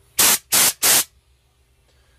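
Old Campbell Hausfeld air spray gun triggered in three short, quick blasts of compressed-air hiss, spraying gold flake.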